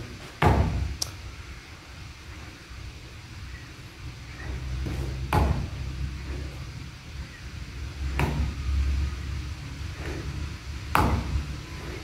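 A handful of sharp knocks a few seconds apart, the first the loudest, over a low steady hum in a room.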